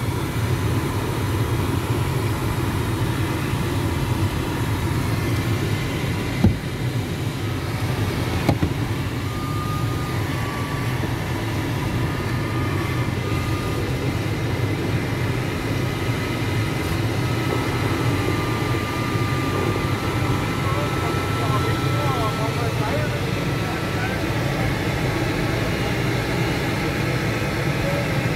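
Steady rush of airflow over the canopy heard inside the cockpit of a PIK-20E glider in gliding flight, with faint high tones coming and going in the middle.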